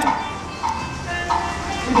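Taiwanese opera accompaniment playing a short instrumental interlude between sung phrases: short notes about every half second, with a held tone in the second half.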